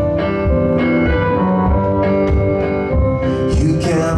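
Live band playing an instrumental passage between vocal lines: guitar and keyboard holding sustained notes over a steady drum beat, with kick hits about twice a second.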